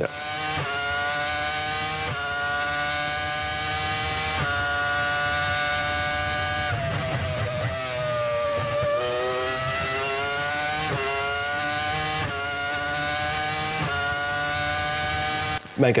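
Onboard sound of a 2004 BAR Honda Formula 1 car's 3.0-litre V10 at high revs (around 17,800 rpm), pulling hard with a quick upshift every second or two. About halfway through the pitch falls as the car brakes and downshifts for a corner, then climbs through the gears again.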